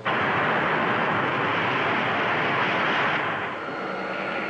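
Spaceship rocket-engine sound effect: a steady rushing noise that cuts in suddenly and eases down about three and a half seconds in.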